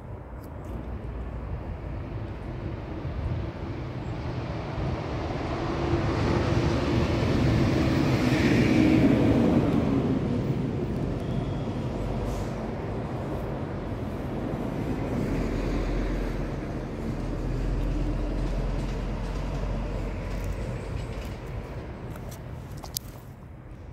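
Steady outdoor rumbling noise that swells to a peak about nine seconds in, then slowly fades, with a smaller swell later on.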